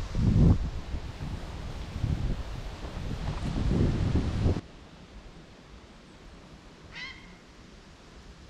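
Wind buffeting the microphone in irregular gusts, which cut off suddenly about four and a half seconds in. The quiet outdoor background that follows holds one short bird call, a few quick falling notes, near the end.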